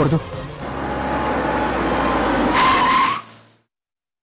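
A car approaching and braking to a stop, with a brief tyre squeal at the end; the sound swells for about three seconds and then cuts off suddenly.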